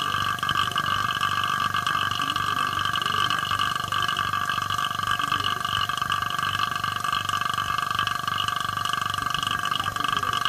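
Vacuum pump running steadily, pumping the air out of a glass bell jar that holds a beaker of water, to bring the water to a boil at room temperature. A constant hum with a fast pulsing beneath it.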